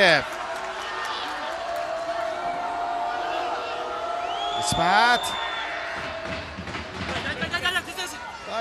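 Football stadium sound during play: a sparse crowd's voices and calls carrying across the ground, with one loud shout about five seconds in.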